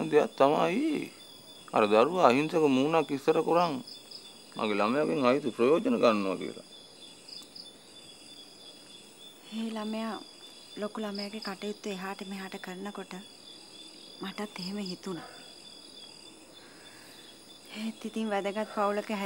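A man talking for the first few seconds and a woman replying from about halfway through, over a steady high chirring of night insects.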